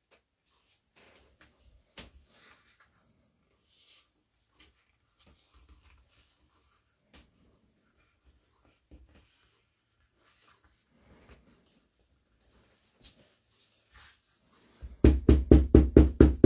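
Faint handling of stiff leather pieces on a cutting mat, then near the end a quick run of light hammer taps on the glued leather, about six a second, pressing the rubber-cement bond and working out air bubbles.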